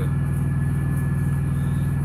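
Semi-truck's diesel engine idling, a steady low drone heard from inside the cab.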